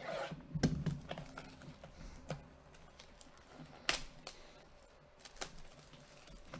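Plastic shrink wrap on a trading-card box being cut and peeled off: irregular crinkles, clicks and scrapes of the cellophane, with sharp crackles about half a second and four seconds in.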